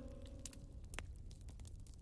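Faint crackling of a wood campfire, with scattered sharp pops, one of them about a second in. The tail of a guitar music interlude fades out near the start.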